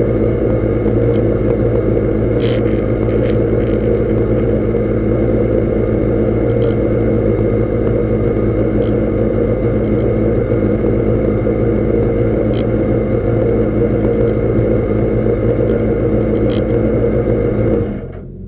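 Race car engine idling steadily, heard from inside the stripped cabin, with a few faint ticks now and then. The sound cuts off suddenly at the end.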